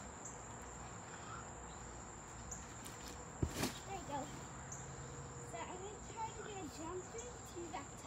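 Insects singing in a steady high tone throughout, with a single thump from the trampoline mat about three and a half seconds in as she lands a bounce. Faint voices are heard in the second half.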